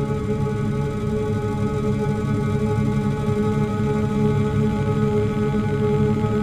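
Ambient electronic music: a slow drone of many steady held tones over a dense low bed, unchanging throughout.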